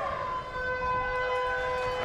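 Ground's half-time hooter sounding one long, steady note, signalling the end of the first half of a rugby league match.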